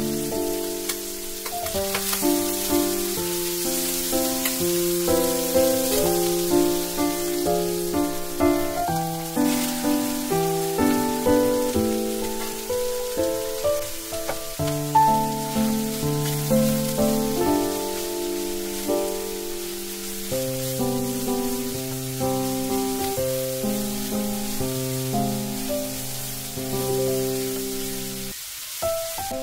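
Light instrumental background music with a bouncy melody, over the sizzle of diced ham, green onion and vegetables stir-frying in oil in a pan.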